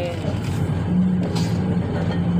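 Komatsu PC400-8 excavator's diesel engine idling, heard from inside the operator's cab as a steady low drone.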